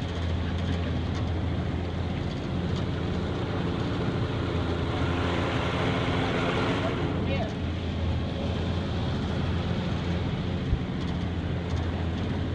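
Outboard motor of an aluminum jon boat running steadily at cruising speed, with the rush of wind and water around the hull, a little louder around the middle.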